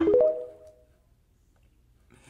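TikTok's end-screen logo sound: a short synthesized tone that glides up and fades out within about the first second, followed by near silence.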